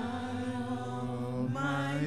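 Gospel praise music: a long held sung note over accompaniment, with a steady low tone coming in about half a second in and a new sung phrase starting near the end.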